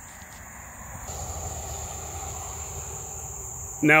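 Steady high-pitched chorus of crickets and other field insects, with a broader rushing background noise that swells about a second in.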